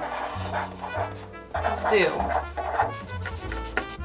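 Background instrumental music with a bass line that steps from note to note, and one word spoken over it about two seconds in.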